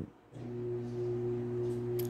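A person humming a steady, low "mmm" at one unchanging pitch for nearly two seconds, a drawn-out filled pause while searching for words; it starts a moment in and ends as speech resumes.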